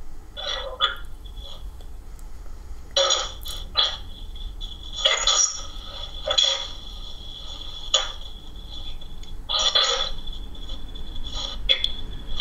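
Ghost box (spirit box) scanning through radio stations: short, choppy bursts of radio static and clipped voice fragments every second or two, over a faint steady high tone.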